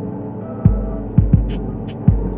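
Experimental electronic music: a steady hum of many stacked tones. Deep bass thumps come once about two-thirds of a second in and twice in quick succession a little after a second, and two sharp high clicks follow near the end.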